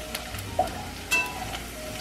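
Shallot and garlic sizzling in hot oil in a stainless steel pan while being stirred with a spatula, which knocks against the pan about a second in.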